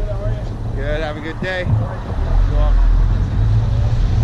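Steady low rumble of a car's engine and tyres heard from inside the cabin as it rolls slowly. Faint speech comes in the first half and fades out.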